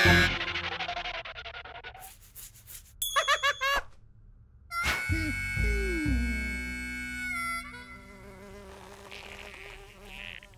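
Cartoon soundtrack of sound effects and short music cues: ringing tones fading out, a run of clicks, wavering buzzy tones, then steady ringing tones with falling glides that start suddenly about five seconds in.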